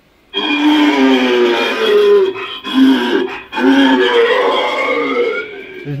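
A loud, drawn-out eerie wailing sound effect from a horror attraction's speakers, several steady tones together, starting a moment in and broken twice by short pauses near the middle.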